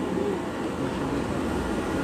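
Steady low background hum and hiss of indoor machinery noise, with no clear events.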